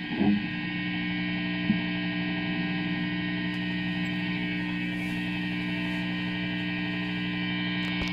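Electric guitar rig left live after the playing stops, giving a steady electrical mains hum with several buzzing overtones. A brief knock comes just after the start, a small click about two seconds in, and more knocks at the very end.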